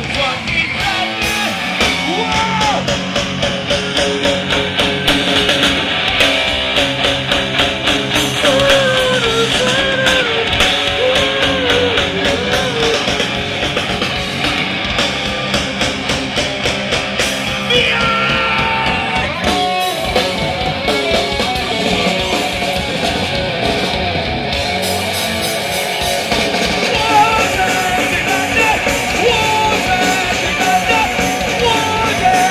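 Live rock band playing loud: electric guitar and drums under sung and shouted vocals, with a brief stop in the music about two-thirds of the way through.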